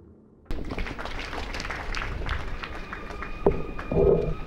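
About half a second in, outdoor ambience of a ceremonial gathering begins abruptly: an even rush of crowd and open-air noise with scattered clicks. A faint steady tone comes in about halfway, and a couple of heavy thumps follow near the end.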